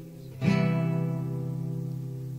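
Acoustic guitar in a slow song's instrumental break: after a brief lull, a chord is strummed about half a second in and rings on.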